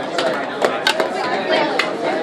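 Hockey sticks and a puck knocking against one another and against the plastic boards of a box hockey rink: several sharp, irregular clacks over steady crowd chatter.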